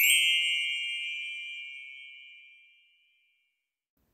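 A single bell-like ding, struck once and ringing out as it fades away over about three seconds.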